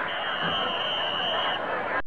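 A referee's whistle: one steady, high-pitched blast lasting about a second and a half, over background crowd chatter.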